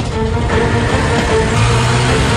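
A van's engine running as it pulls away, under background music.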